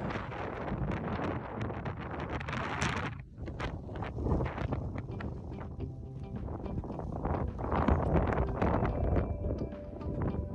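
Wind buffeting the microphone, which cuts off about three seconds in. Background music with a beat follows, with wind noise still under it.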